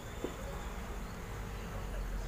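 DB amplified speaker giving off a steady low hum with a buzzy edge. This is the loud mains-type hum fault in its amplifier that is being traced.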